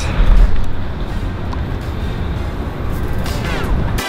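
Wind buffeting a handheld camera's microphone outdoors: a heavy, steady low rumble, loudest just after the start, with a brief voice near the end.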